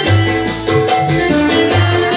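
Live music from an electronic keyboard: a steady beat with regular bass notes under a melody.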